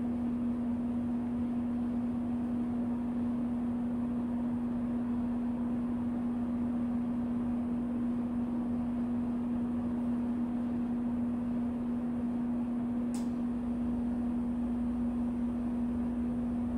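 A steady low hum at a single pitch over a faint hiss, with one click about thirteen seconds in.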